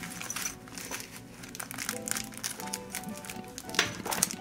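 Plastic wrapping and a zippered fabric pouch being handled, crinkling and rustling in short irregular bits over soft background music, with one sharper crinkle near the end.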